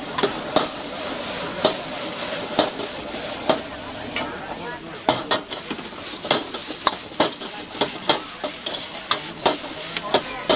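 Metal wok ladle clanking and scraping against a wok, with sharp knocks about every half second to a second, while rice noodles sizzle steadily as they are stir-fried.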